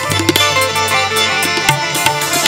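Instrumental ghazal accompaniment: a harmonium and keyboard melody over hand-drum strokes on a dholak.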